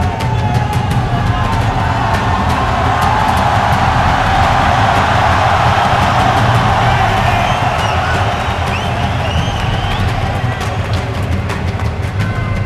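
Loud arena music with a steady low bass, over a large crowd cheering and shouting; the crowd noise swells in the middle and eases off near the end.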